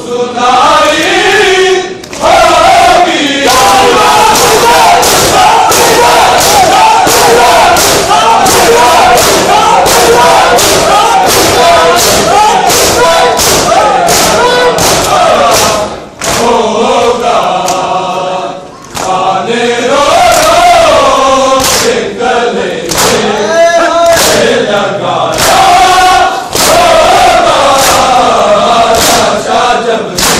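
A crowd of men chanting a mourning lament in unison, with rhythmic chest-beating (matam) slaps in time with the chant.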